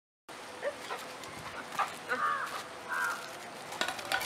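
A dog giving two short, high-pitched yelps about two and three seconds in, over steady outdoor background noise with a few sharp clicks.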